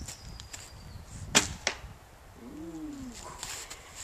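A traditional wooden bow being shot: one sharp, loud snap of the string on release about a second and a half in, followed a quarter second later by a softer knock of the arrow striking the foam target.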